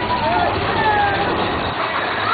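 Big Thunder Mountain Railroad mine-train roller coaster running along its track, a loud steady rumble and rattle, with riders' voices calling out over it.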